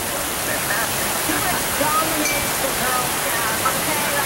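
Heavy, wind-driven rain pouring onto open water: a steady, even hiss.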